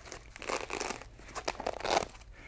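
A nylon plate-carrier placard with hook-and-loop (Velcro) lining being handled: light rustling and crinkling with a scattering of small clicks as the fabric panel is moved.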